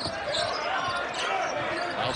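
Basketball being dribbled on a hardwood court: a run of quick bounces.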